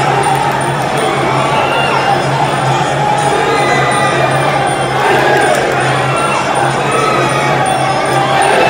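Muay Thai ringside music: a reedy melody wavering and gliding up and down over percussion, from the live band that plays through the bout. Under it the crowd shouts steadily as the fighters clinch.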